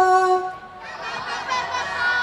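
A woman singing a long held warm-up 'la' into a microphone over a PA, ending about half a second in. From about a second in, a fainter crowd of children's voices sings the note back.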